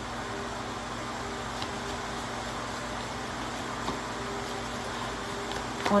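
Steady low mechanical hum, like room ventilation running, with a couple of faint ticks.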